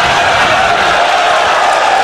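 Audience applauding, a steady dense clatter of clapping mixed with crowd voices.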